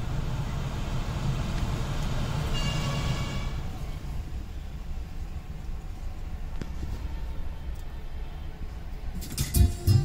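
Car engine idling, heard from inside the cabin as a steady low rumble, with a short ringing tone about three seconds in. Near the end, music starts playing through the car's speakers.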